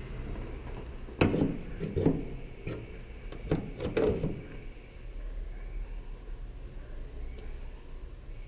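A few separate clunks and knocks from a car bonnet and its prop rod being handled, most of them in the first half.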